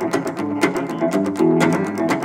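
Telecaster-style electric guitar played clean with a steady country rhythm: picked bass notes and strummed chords, in an even beat of sharp plucks.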